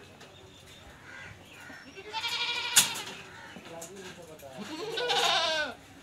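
A goat bleating twice, two wavering, quavering calls each about a second long. A single sharp click falls during the first call.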